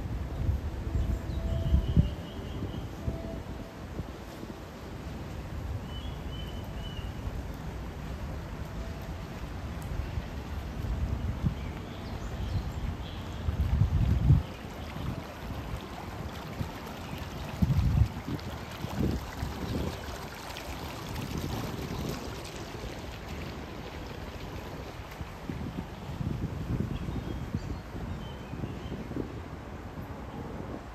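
Outdoor city ambience while walking: a steady background hiss with several deep, low rumbles that come and go, the strongest near the start and twice around the middle.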